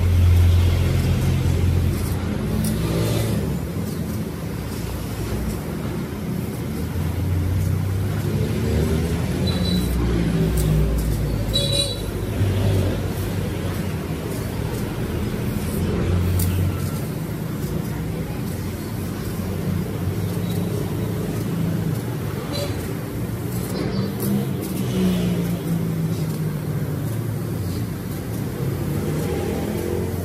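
CNC sheet-metal cutting machine at work cutting steel plate: a steady low hum with motor tones that rise and fall now and then as the cutting head moves.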